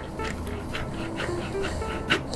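A French press plunger pumped in short, light strokes at the surface of milk to froth it, drawing in air: soft, quick sloshing at about four strokes a second, over background music.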